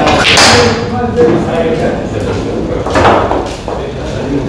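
Pool balls on a sinuca table: a sharp knock as the cue ball strikes the object ball shortly after the start, and another sharp knock about three seconds in.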